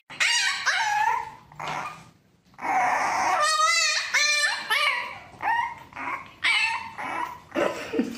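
A French bulldog puppy howling in a string of calls that rise and fall in pitch, with short breaks between them. One call about halfway through quavers.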